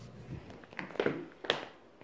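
A few light taps and knocks, about four in two seconds, at a low level.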